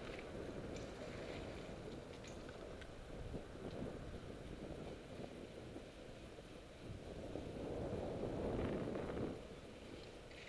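Wind rushing over the microphone of a camera riding on a moving bicycle, a steady low noise that swells louder for a couple of seconds near the end.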